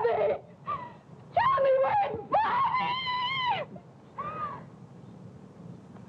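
A woman screaming and crying out in anguish: a string of high-pitched cries, the longest lasting about a second near the middle, then a last short cry a little after four seconds in.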